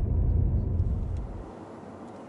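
A steady low rumble of a car driving, heard from inside the cabin. It cuts off abruptly about one and a half seconds in, leaving only a faint, even hiss.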